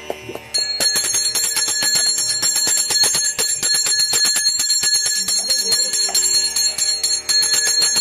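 A brass puja bell rung rapidly and continuously, starting about half a second in, with a bright ringing tone held throughout. A few quick percussive beats are heard at the very start.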